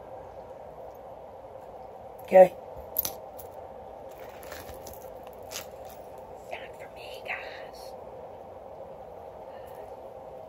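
Heavy metal chain-link necklace being handled and fastened around the neck: faint scattered clinks and clicks of the links over a steady low hum, with one short vocal sound about two and a half seconds in and a sharper click just after it.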